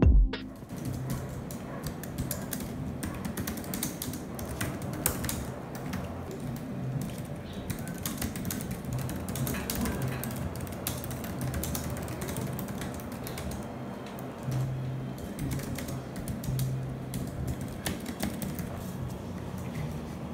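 Typing on an ASUS laptop keyboard: a continuous run of quick, irregular key clicks.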